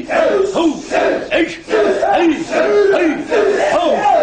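A group of karateka shouting short kiai together, over and over, about two shouts a second.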